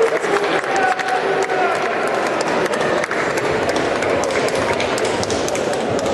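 Audience applauding steadily, with some voices in the crowd.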